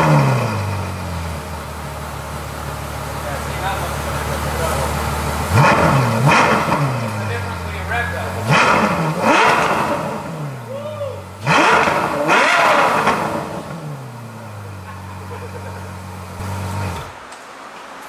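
Ferrari F12's V12 engine, its exhaust valves held open: it fires up with a flare of revs, settles to idle, and is blipped in three quick pairs of revs before settling back and being switched off near the end.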